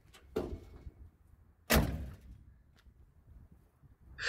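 Car door of a 1963 Chevrolet Impala, its inner trim panel removed, being shut: a light thud, then about a second and a half later a louder slam.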